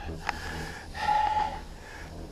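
A person's breath close to the microphone: a nasal exhale with a faint whistle about a second in, over a low steady rumble.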